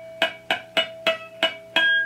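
Clean electric guitar, its first string picked about four times a second while the other hand lightly touches it up the neck to find natural harmonics. A steady ringing harmonic sustains under the short picked notes, and a higher harmonic rings out near the end.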